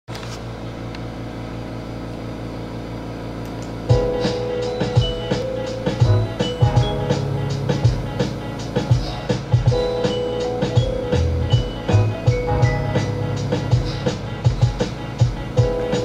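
Instrumental backing track of a mellow hip-hop song. It opens with soft, sustained chords, and a drum beat and keyboard melody come in about four seconds in.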